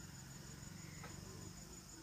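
Faint, steady chirring of crickets, an even high-pitched pulsing with no pause.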